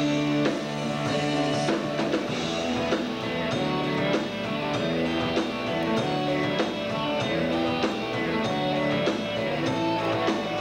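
Rock band playing live: electric guitars over drums keeping a steady beat, recorded through a camcorder's built-in microphone.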